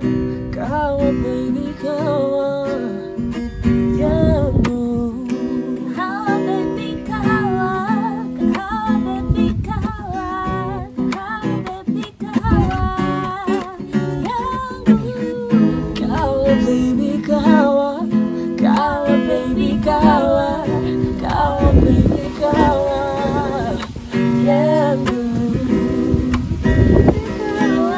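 Acoustic guitar strummed in chords, accompanying a man and a woman singing a slow song.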